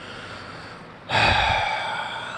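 A sudden loud breathy exhale about a second in, fading away over the next second.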